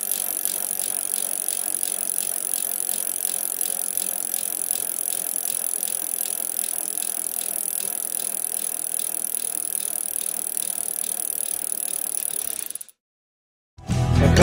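A steady hiss with fast, even mechanical ticking running through it, like a ratchet. It cuts off suddenly about a second before the end.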